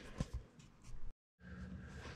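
Quiet room tone with two or three faint small clicks in the first second, broken by a moment of dead digital silence where the recording is cut, then a faint steady hum.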